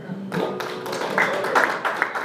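The last notes of an acoustic guitar ring out. About a third of a second in, a small audience starts applauding: a dense, uneven patter of handclaps.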